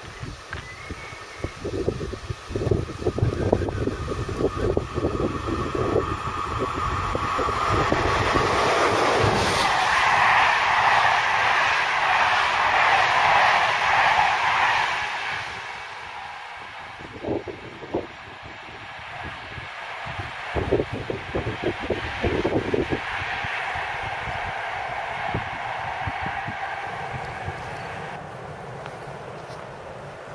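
Electric locomotive BB 7409 hauling a rake of passenger coaches past at speed. Rail noise and a steady high whine build as the train approaches, followed by a loud rush of wheels on rail for several seconds as the coaches go by close up. The sound drops off suddenly about halfway through and fades as the train moves away.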